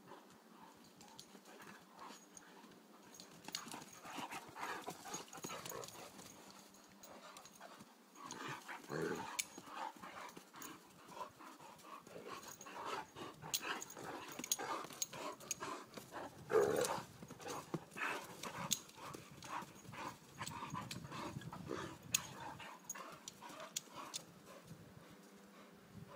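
Two Irish Wolfhounds play-fighting: irregular bursts of dog noises and scuffling, with sharp clicks scattered through. The loudest burst comes about two-thirds of the way in.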